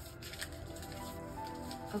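Soft background music with long held notes, with a couple of faint taps from a tarot deck being handled in the first half second.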